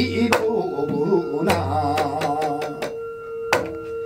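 Male Korean seodo sori folk singing with a wavering vibrato, accompanied by strikes on a janggu hourglass drum and small hand-held brass bowls whose ringing hums underneath. The voice stops about three seconds in, and a last sharp strike rings on.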